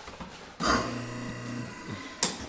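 Kitchen sink garbage disposal switched on about half a second in, its motor running with a steady low hum and whir for just over a second, then shut off. The disposal is in working order.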